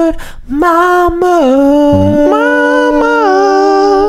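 A voice singing the end of an improvised song. It gives a few short notes, then holds one long note that slides down slightly about a second and a half in and is sustained to the end.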